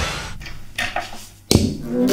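A fading hiss, then a sharp struck attack about three quarters of the way in from an electric guitar through a small combo amplifier, its notes ringing on.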